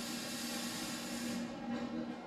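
Robotic arc welding on a steel tube frame: a steady hiss from the welding arc over a low machine hum, the hiss fading out about one and a half seconds in.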